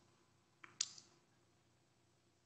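A few short, faint clicks of laptop keys in use, between half a second and a second in.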